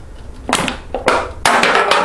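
Metal drink can dropped onto a hard tabletop, clattering, with several sharp knocks and a quick run of clicks as it tips over and rolls.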